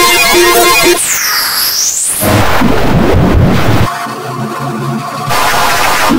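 Heavily distorted, effects-processed cartoon soundtrack: garbled music and sound effects that cut abruptly from one texture to another every second or so, with a swooping pitch glide about a second in.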